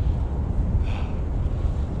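Wind buffeting the microphone in a steady low rumble, with a short breath about a second in.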